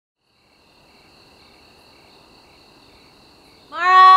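Crickets chirping steadily and faintly after about half a second of silence. Near the end a loud, single pitched call cuts across them.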